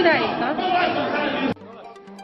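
A woman speaking into a microphone with other voices behind her, cut off suddenly about one and a half seconds in; then much quieter music with steady low notes.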